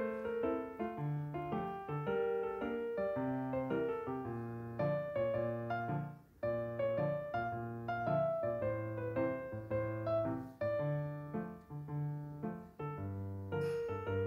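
Background piano music: a melody of single notes over a low bass line, with a brief pause about six seconds in.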